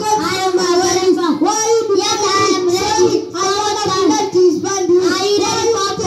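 A child singing into a handheld microphone, the voice running on with long held notes and hardly a break.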